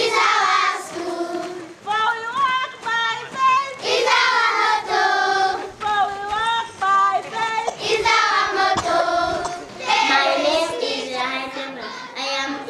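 A group of children singing a song, the voices holding long notes and sliding between them.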